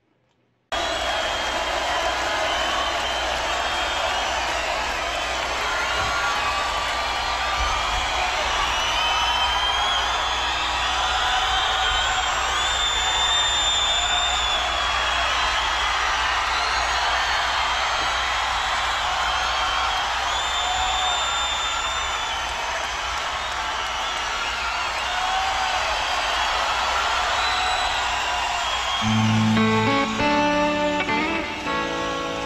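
Concert-recording arena crowd cheering, screaming and whistling. Near the end, an electric guitar comes in loud with sustained notes as the solo begins.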